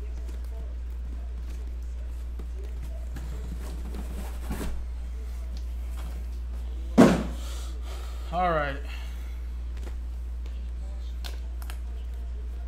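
Sealed cardboard hobby boxes of trading cards being handled and stacked: a few light knocks, then one sharp thump about seven seconds in as a box is set down, over a steady low hum.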